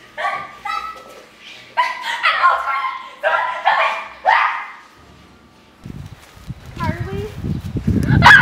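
A run of short, high-pitched yelps over the first four seconds or so, some sliding upward. After a brief lull, a rough low rumble starts near the end.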